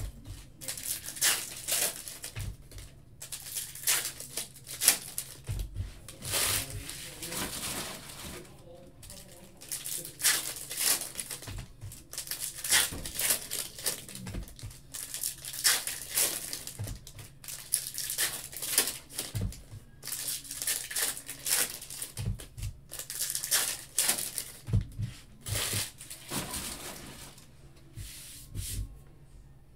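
Foil trading-card pack wrappers crinkling and tearing as packs are ripped open and cards are handled, in a long run of short, irregular crinkly bursts. A few soft knocks come from card stacks set down on the table.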